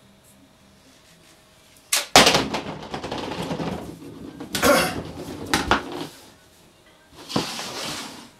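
A sudden loud knock about two seconds in, then clattering and rustling as a tennis racket stacked with rubber hockey pucks is brought down off the chin and handled. Further knocks follow, the sharpest near the end.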